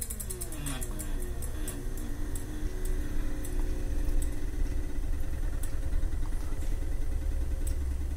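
Two electronic powder tricklers running at once, their small motors humming as they trickle rifle powder onto the scale pans in the fine-trickle stage near a 56.4-grain target. The hum drops in pitch over the first few seconds and then holds steady, with light scattered ticks.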